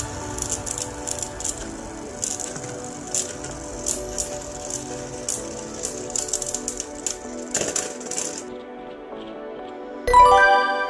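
Two Beyblade spinning tops whirring and knocking together in a stadium, a fast run of clicks and rattles as they clash; the clatter stops about eight and a half seconds in as the battle ends.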